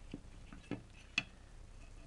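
Three small clicks and taps from fingers handling a small LED circuit board and its plastic case; the loudest click comes just past the middle.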